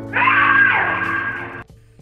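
A sudden, loud, shrill scream lasting about a second and a half, the jump-scare cry as a ghostly figure appears, over a low steady horror-music drone; it cuts off abruptly.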